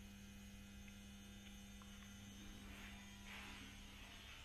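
Near silence: room tone with a steady low hum. A few faint hissy rustles come in during the last second or so.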